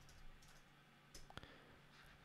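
Near silence, with a few faint clicks of a computer keyboard a little over a second in.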